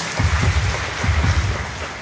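A crowd applauding after a speaker's thanks, with irregular low thumps underneath, tailing off near the end.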